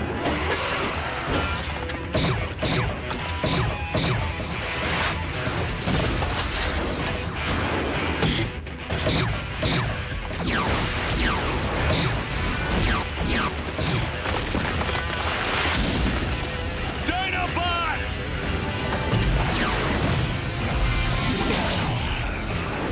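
Cartoon sci-fi action sound effects: mechanical whirring and clanking of a robot transformation, then laser blasts and crashing impacts over action music, with many sliding electronic pitch sweeps.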